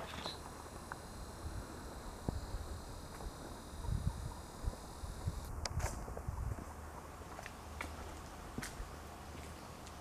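Faint footsteps and camera-handling thumps as a handheld camera is carried along, with a few sharp clicks. A thin, steady high-pitched whine sounds over the first five seconds and cuts off suddenly.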